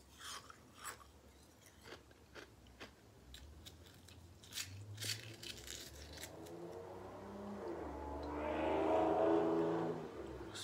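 Chewing and spoon scraping on soft, crunchy coconut meat. From about six seconds in, a loud car going by rises over the eating and becomes the loudest sound near the end.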